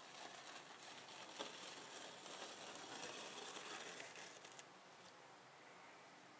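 Multi-disc rolling candy cutter scoring a set slab of milk chocolate Fruity Pebbles cereal bark, the blades pressing through the chocolate and cereal. A faint rough noise, with one sharper click about a second and a half in, easing off after about four and a half seconds.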